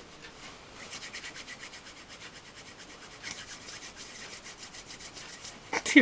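A hand rubbing quickly back and forth on a jacket's cloth: a faint, even run of about nine rubbing strokes a second, starting about a second in.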